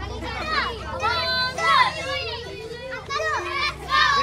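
A group of young children shouting and calling out together in high voices, several at once and overlapping.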